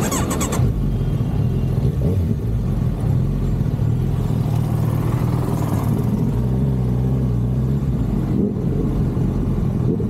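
Kawasaki Ninja 1000SX's inline-four engine running at idle with a steady low hum.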